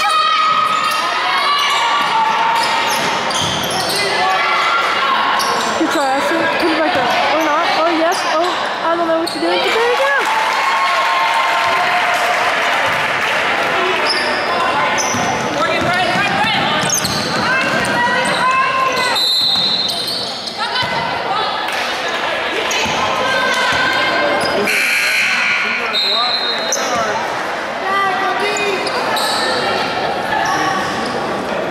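Basketball game in a gym: a ball dribbling on the hardwood court, with players' and spectators' voices echoing in the large hall.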